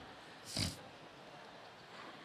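A single short, breathy puff of breath, like a brief exhaled laugh close to a microphone, about half a second in, against faint hall tone.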